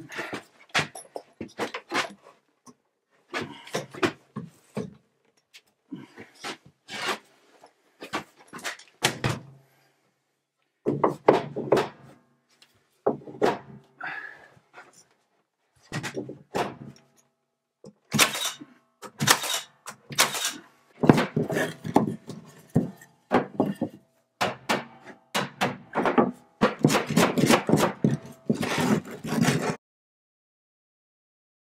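Nail gun and hammer driving nails into wooden wall boards: sharp knocks in short runs, separated by brief silences, with a close run of strikes near the end.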